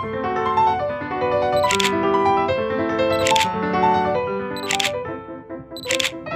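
Background piano music, crossed by four camera shutter clicks about a second and a half apart.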